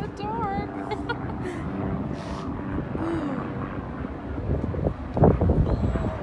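Steady low wind rumble on the microphone out on the open deck of a cruise ship under way, with people talking nearby; a louder burst of voices comes about five seconds in.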